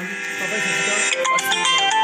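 Short electronic melody: a held chord, with a quick run of stepped high notes coming in about a second in.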